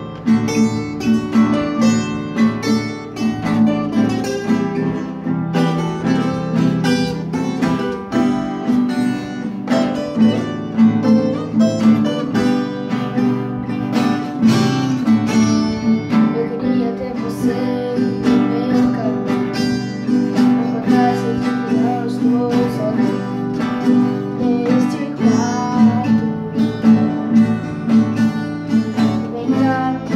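A nylon-string classical guitar (violão) and a ten-string viola caipira playing together in a steady rhythm of strummed and plucked notes, with a voice singing along in part.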